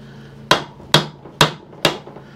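Four light mallet taps on a screwdriver, about half a second apart, struck to shock the threads of a tight retaining-plate screw on a Reliant 600cc engine block so that it will turn.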